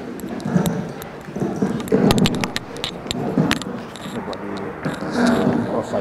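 Indistinct chatter of several people in a room, with a quick run of sharp clicks and rattles of handled objects about two to three and a half seconds in.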